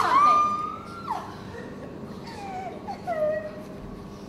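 A high, howl-like wailing cry sliding up and then down in pitch, loud for about the first second, followed by a few softer, shorter whining glides.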